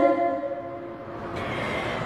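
A pause between lines of sholawat chanted over a mosque's microphone and loudspeakers: the last sung note dies away at the start in the room's echo, leaving a faint, even hiss that grows brighter just over a second in.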